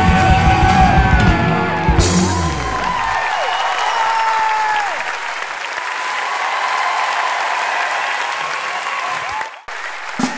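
A rock band's last chord rings out over the first couple of seconds, then a theatre audience applauds and cheers, with a few whistles. The applause cuts off abruptly shortly before the end.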